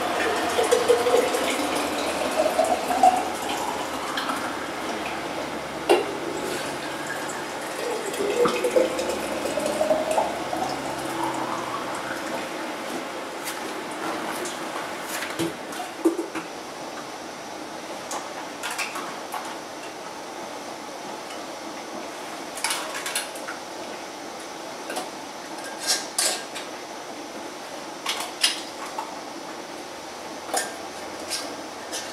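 Boiled water being poured into glass canning jars, the pouring note rising in pitch as each jar fills, twice in the first twelve seconds. Later come scattered sharp clinks of glass and metal.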